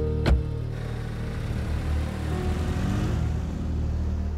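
A car door slams shut once, sharply, about a third of a second in, followed by a car engine running under background music.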